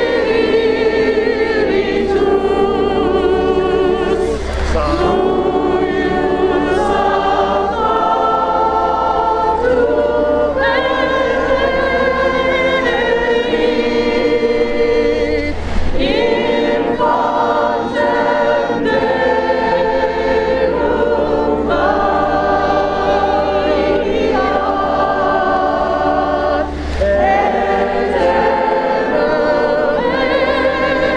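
A group of voices singing together in harmony, holding long notes.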